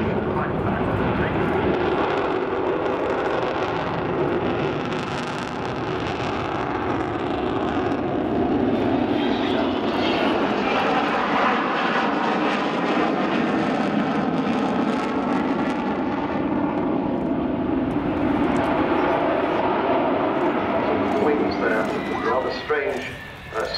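Avro Vulcan bomber's four Olympus jet engines running at display power as it flies past, a steady, loud jet noise with a wavering higher whine through the middle of the pass.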